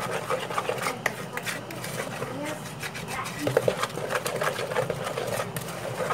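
A spatula stirring cocoa into cake batter in a bowl: a continuous run of small scrapes and taps against the side of the bowl.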